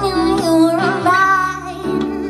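A woman singing live, holding long wavering notes with no clear words, over acoustic guitar and band accompaniment.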